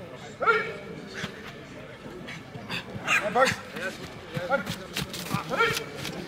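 Short, loud shouted calls from several men, a sharp yell about half a second in and bursts of shouting around three seconds and again near the end.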